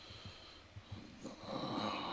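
A person breathing out audibly near the microphone: a faint, breathy rush of air that starts about a second in and carries on.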